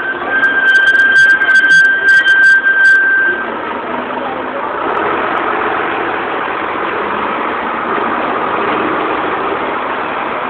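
A heavy truck drives past close by. For about the first three and a half seconds it is loud, with a high steady squeal over the engine. After that the engine and street traffic go on steadily.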